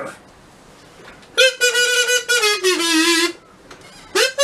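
After a short quiet spell, a wind instrument plays a short phrase of one held note that steps down in pitch near the end, then stops.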